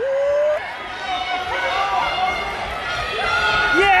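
Spectators yelling and cheering a runner on, many voices overlapping. One close voice gives a rising shout at the very start.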